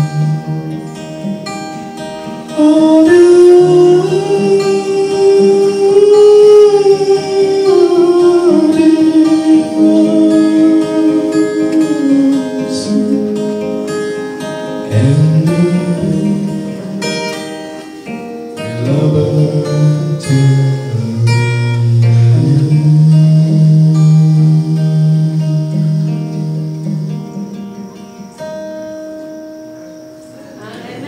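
A man singing a slow song with long held notes, accompanying himself on acoustic guitar. The music dies away over the last few seconds.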